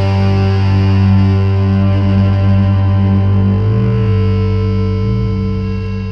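Music: a distorted electric guitar chord held and ringing out, slowly fading as the song closes.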